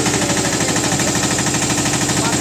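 A motorboat's engine running steadily with a fast, even chugging.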